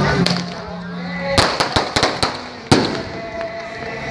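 Firecrackers going off: a quick string of about half a dozen sharp bangs over roughly a second, then one more crack a moment later, heard over crowd voices.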